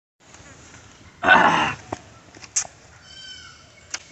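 A loud animal cry about a second in, lasting about half a second with a wavering pitch. Later come a brief high chirp and a thin, slightly falling whistled call.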